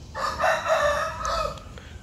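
A rooster crowing once, a single call lasting about a second and a half.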